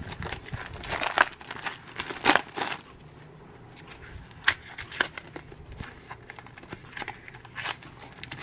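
A printed toy blind-bag wrapper crinkling and tearing as it is pulled open by hand, in a run of irregular crackles. It goes quieter for about a second and a half in the middle, then scattered crinkles and clicks follow.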